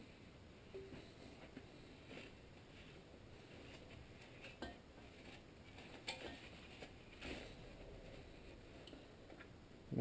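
Faint, scattered clicks and light knocks as a nylon strap wrench is fitted around a small engine's cast flywheel, about five small taps spread over several seconds, the sharpest near the middle.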